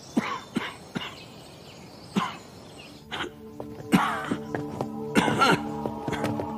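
A man coughing in a run of short coughs: single coughs spaced about a second apart at first, then louder, rougher coughs about four and five seconds in. It is the bad cough of a sick man. Soft background music comes in under the coughing about halfway through.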